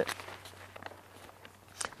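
Faint, scattered rustling and light taps of newspaper and loose paper being handled, with one sharper rustle near the end.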